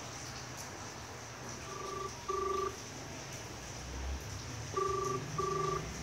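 Telephone ringing tone: two double rings about three seconds apart, each a pair of short steady tones, as a call rings through.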